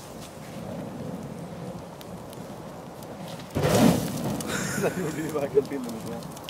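Fuel fire burning in an open steel barrel, with a steady crackling rush of flame. A sudden loud rush of sound comes about three and a half seconds in and dies away within a second.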